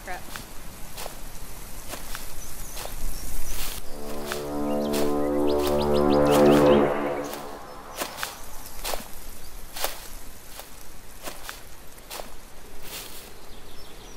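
Film soundtrack swell: a low pitched drone builds in loudness for about three seconds from around four seconds in, then cuts off suddenly. Scattered sharp clicks sound throughout.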